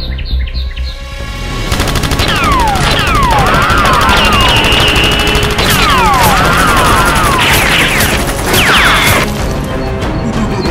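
Rapid automatic-gunfire sound effects over background music, starting about two seconds in and cutting off abruptly near the end, with repeated falling whistling zaps layered on top.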